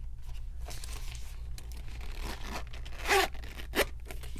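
The zipper of a zip-around wallet being pulled shut in a few quick strokes, the loudest about three seconds in.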